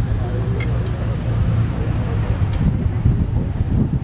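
A steady low rumble, vehicle-like, with faint indistinct voices and a couple of light clicks.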